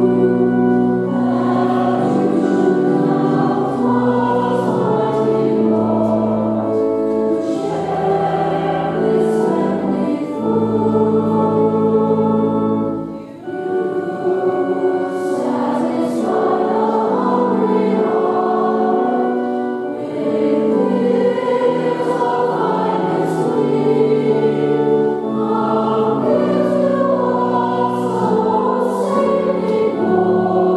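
Mixed church choir singing with long sustained notes, and a short break about halfway through.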